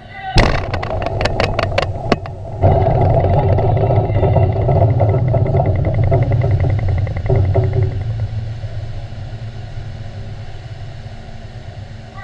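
Underwater explosion of a 40,000-pound shock-trial charge: a sudden start about half a second in with a quick run of sharp rattling knocks. About two seconds later a loud, sustained low rumble begins, then dies away slowly over the last few seconds.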